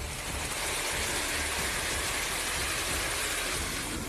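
Fast-flowing floodwater rushing and churning across a paved road: a steady, loud rushing noise.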